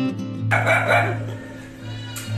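Acoustic guitar background music, joined about half a second in by a sudden, harsh, loud call that fades over the following second.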